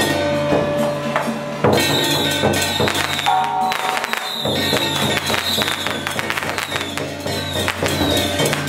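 Taiwanese temple-procession music: a drum with cymbals and gong struck in a quick, even beat, over a melody with held notes and a steady low drone.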